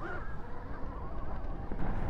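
Wind buffeting the microphone and tyre and chassis rumble from an electric dirt bike riding fast over bumpy grass. The noise is a steady low rumble.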